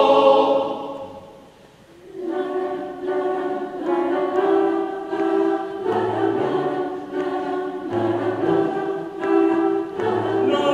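A choir singing a habanera. A full chord dies away in the first second and a half, and after a short pause the men's voices carry on with a phrase in short, repeated notes.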